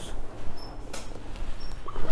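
Rustling and shifting of a person being raised from lying on his side to sitting on a padded examination table, with a knock about a second in and a few brief high squeaks.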